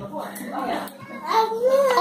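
Young children's voices talking at a table, a short utterance early on and a longer, higher-pitched one in the second half.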